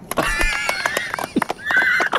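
Men laughing hard in high-pitched squeals, over a scatter of hand claps.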